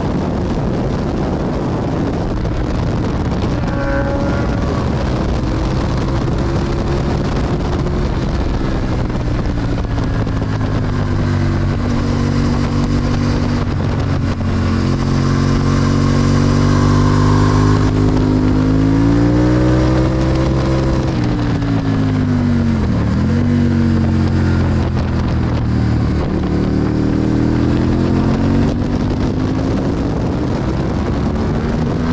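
Honda Hornet 600's inline-four engine at race pace, its revs rising and falling through the gears and corners, with a sharp drop and quick recovery about two-thirds of the way in. A steady rush of wind runs under it.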